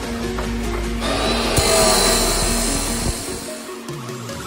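Abrasive chop saw cutting through a square steel tube: a dense, harsh cutting noise starts about a second in and stops just before the end. Background music plays throughout.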